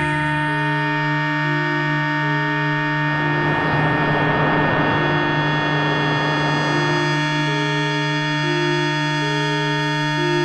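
Electronic music built from shortwave radio sounds: layered steady drone tones under a slow pattern of short tones stepping between a few pitches. A swell of hissing radio noise rises about three seconds in and fades away by about seven seconds.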